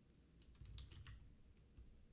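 Faint computer keyboard typing: a quick run of about half a dozen keystrokes, a new stock symbol being keyed in.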